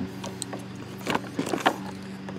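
Light clicks and rattles of a rubber-and-plastic windshield wiper blade being handled and flexed, over a steady low hum.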